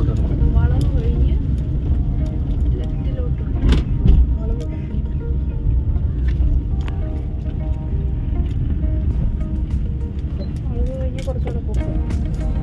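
Car driving, heard from inside the cabin: a steady low rumble of engine and tyres on the road, with a single knock about four seconds in. Music and voices sound underneath.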